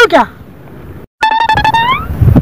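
A man's voice ends a phrase, then faint outdoor background until a brief dead-silent gap at an edit. After it comes a short musical sting with a plucked-string attack and a tone that rises through the last second.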